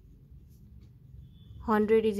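Ballpoint pen writing faintly on notebook paper over quiet room noise with a low hum. A voice begins near the end.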